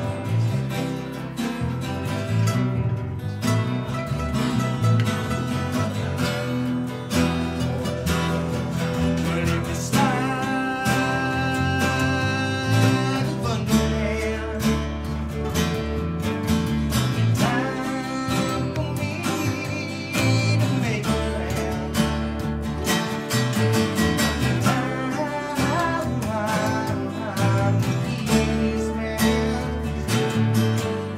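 Live band of acoustic guitars and an electric guitar playing a song together, strummed chords with picked melodic lines over them.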